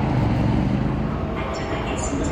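Steady low rumble of passing vehicles, loud throughout.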